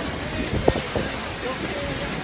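Steady rushing noise of wind and the spray and roar of the Horseshoe Falls, with wind buffeting the microphone in low gusts.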